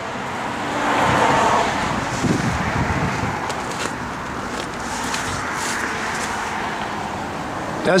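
Road traffic going by: a steady rush of tyre and engine noise that swells about a second in and then holds.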